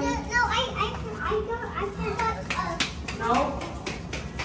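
Young child's voice chattering and calling out, with a few sharp clicks in the middle.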